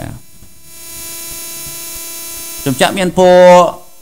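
Steady electrical hum with a constant hiss on the narration microphone, the hiss growing louder about a second in. A man's voice draws out a word near the end.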